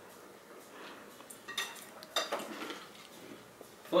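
Metal forks clinking and scraping against dinner plates as people eat, with a few light, sharp clinks in the middle.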